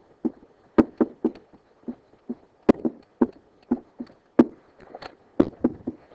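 A string of irregular light knocks and taps, about three a second: a pen or stylus knocking against an interactive whiteboard during writing.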